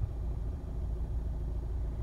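Honda Civic 2.2 i-DTEC four-cylinder turbodiesel idling, heard from inside the cabin as a steady low hum.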